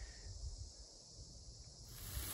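Faint outdoor ambience: an uneven low rumble under a steady high hiss.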